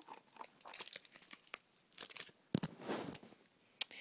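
Plastic packaging being worked open by hand, crackling and crinkling in a scatter of sharp clicks, with a longer rustle about two and a half seconds in.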